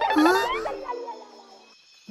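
A young woman's short, puzzled 'ah?' rising in pitch, layered with a cartoon comedy sound effect that rings out and fades away by about a second and a half in.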